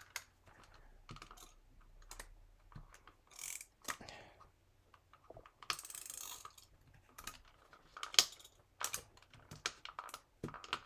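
Tape glue runner drawn along the back of a small paper cut-out, giving short scratchy rasps about three and a half and six seconds in. Around them are sharp clicks and taps from the dispenser and the paper being handled, the loudest just after eight seconds.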